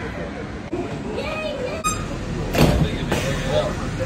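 Footsteps and a couple of sharp thumps as people board a stopped monorail car through its open doors, over a steady low rumble, with voices in the first part.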